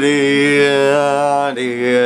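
Singing in a song: a long held note that moves to a lower note about one and a half seconds in.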